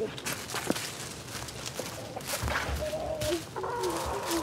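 Hens clucking with a few short calls, over footsteps crunching through dry leaves, plus a low thump about halfway through.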